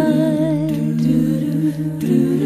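Background music of layered vocal harmonies, sung or hummed without instruments, holding long notes with a slight waver.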